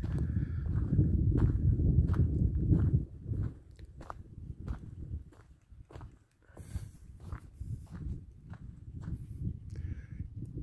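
Footsteps crunching on a dry, stony dirt track, about two steps a second. Wind buffets the microphone with a low rumble for the first three seconds, then drops.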